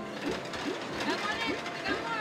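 Pearl Fishery ball-pusher arcade machine running: a mechanical sound with short rising chirps repeating a few times a second.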